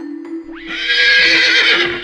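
A horse whinny sound effect, sweeping up about half a second in and holding with a wavering pitch for over a second before fading, over light background music.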